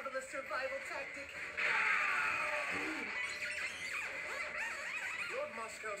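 Anime episode soundtrack playing through a speaker: character voices over background music, with a loud noisy sound effect that cuts in about a second and a half in and fades away over the next couple of seconds.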